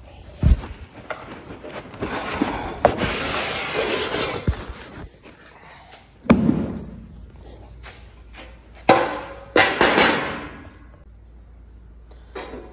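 A steel transmission-tunnel panel being worked out of a long cardboard box: cardboard scraping and rustling against the sheet steel, broken by knocks, with the loudest thump about six seconds in and more knocks and scraping near the end.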